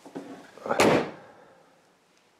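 The driver's door of a 1960 Saab 96 being swung shut, closing with one solid thud a little under a second in.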